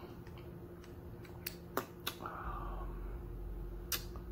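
A few sharp clicks and handling noises from a hot sauce bottle and a tasting spoon, with a short hiss a little past halfway, over a low room hum.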